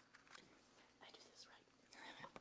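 Near silence: quiet room tone with a few faint, brief clicks and rustles.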